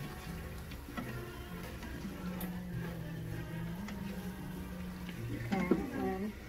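Soft background music with low held notes that step in pitch. Under it are faint clicks and scrapes of a silicone spatula stirring chicken and sauce in a stainless steel Instant Pot inner pot.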